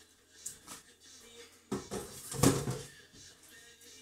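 Kitchen clatter as the blender jar is handled and set down, with light clicks first and then a cluster of knocks ending in a sharp clunk about two and a half seconds in.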